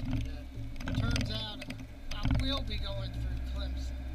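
Low, steady hum of a car driving slowly, heard from inside the cabin, with a person's voice talking over it twice.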